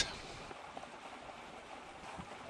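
Faint, steady background hiss of wind and water aboard a small sailboat under way, with no distinct events.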